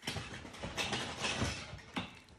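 Rustling handling noise as a phone and toy dolls are moved about over cloth, starting suddenly, with a sharp click near the end.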